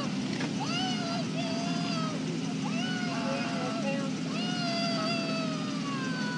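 A person's drawn-out, wavering wailing cries, several in a row with the pitch sliding up and down, over the steady hum of an idling vehicle.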